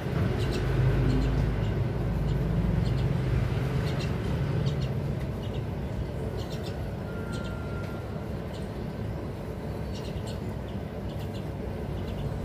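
Steady low background rumble with scattered short, high chirps and clicks from young pet mynas.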